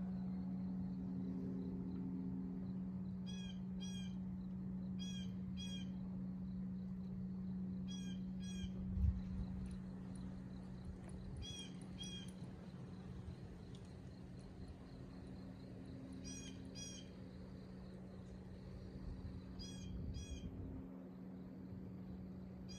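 A bird calling in short double notes, the pair repeated every few seconds, over a steady low hum. A brief low thump about nine seconds in.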